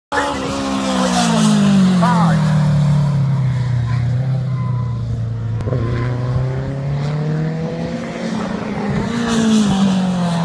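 Racing sidecar outfit's engine on a circuit. Its pitch falls over the first few seconds, holds steady for a while, then rises again near the end as it accelerates.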